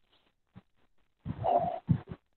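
A dog vocalizing, heard through the narrow, call-quality audio of an online meeting: one longer call about a second in, then two short ones near the end.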